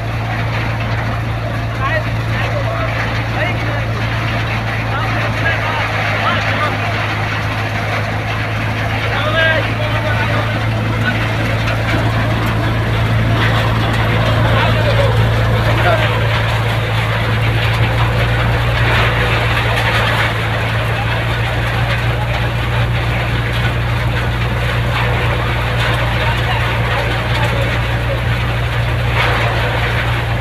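Groundnut thresher with a conveyor feeder running steadily while threshing peanut plants, a constant low machine drone. Voices can be heard faintly behind it.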